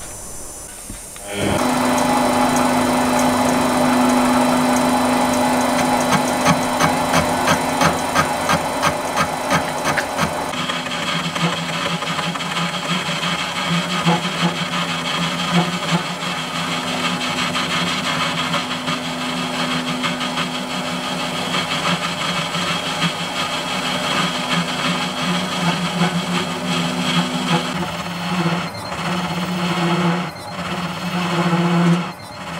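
Metal lathe starting up about a second and a half in and running under a cut, a cutting tool turning the outside of a metal bar held in a four-jaw chuck: a steady motor hum with the scratchy scrape of the cut, and a run of regular ticks for a few seconds.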